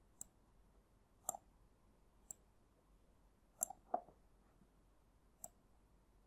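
Computer mouse button clicks, about seven faint, separate clicks, some in quick pairs of press and release, as wire connections are clicked into place.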